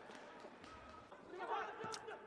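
Faint ambient sound of a small football ground during a pause in the commentary: a low hiss with faint distant voices, a little louder about one and a half seconds in.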